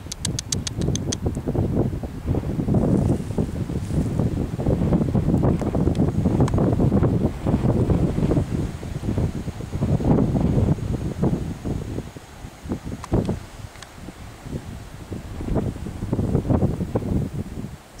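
Wind buffeting the camera microphone outdoors: a loud, gusting low rumble that eases off for a few seconds after the midpoint. A quick run of about ten small clicks comes in the first second.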